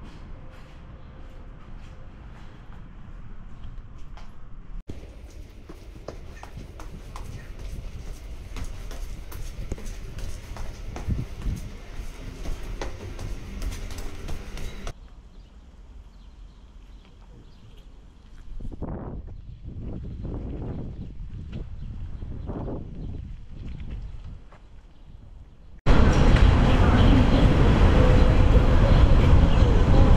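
Outdoor street ambience with distant voices of passers-by, changing abruptly several times. Near the end a much louder rumble of wind on the microphone takes over.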